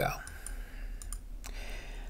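A few light clicks from working a computer, between one and one and a half seconds in, over a low steady background hiss.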